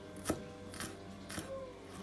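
Chef's knife chopping coriander on a bamboo cutting board: three sharp knife strikes on the wood, roughly half a second apart.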